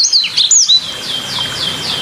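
A songbird singing: a few quick whistled notes, then a run of short, repeated falling whistles, about four a second, over a faint steady hiss.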